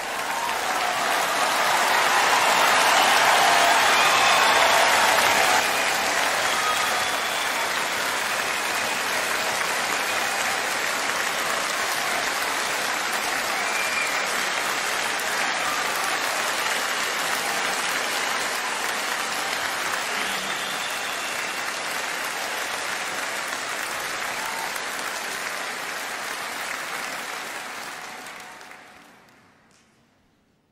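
Large concert audience applauding steadily, loudest in the first few seconds, then dying away near the end.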